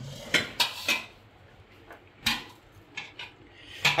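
A plastic spoon scraping and knocking against a speckled non-stick pan and a stainless steel plate as cooked rava mixture is pushed out onto the plate. There are a handful of short clatters, three close together at the start and a few more spread through the rest.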